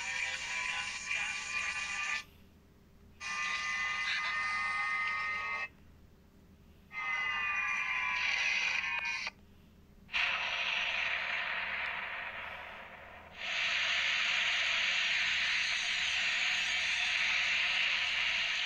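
Sound effects from an animated video's soundtrack: three stretches of steady electronic tones, each about two seconds long with a second of silence between, then a steady hiss that gets louder about three quarters of the way through.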